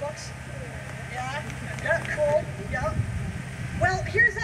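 A woman's voice talking over a PA system, in short phrases, with no guitar playing. A steady low hum sits underneath.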